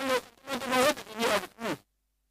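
A man speaking into a studio microphone in short phrases; the sound drops abruptly to silence between them.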